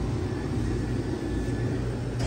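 A steady low mechanical hum, even throughout, with no knocks or clicks.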